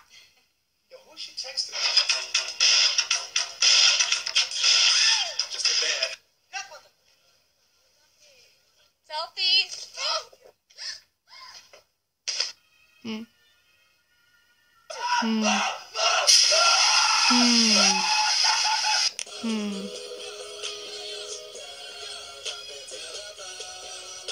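Soundtracks of short video clips playing back one after another: voices and music in short bursts, with brief quiet gaps between clips and steady music in the last few seconds.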